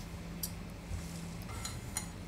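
Steel forceps lifting a tin capsule off a microbalance pan, giving a couple of faint metallic clicks, one about half a second in and one at the end, over a low steady hum that stops about a second and a half in.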